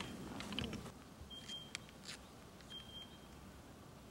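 A faint, short, high beep repeating about every second and a half, with a few light clicks among the beeps.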